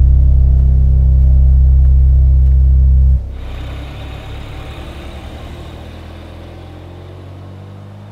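A loud, deep, steady drone cuts off suddenly about three seconds in, leaving the sound of a Fiat Toro pickup truck driving away, fading steadily as it recedes.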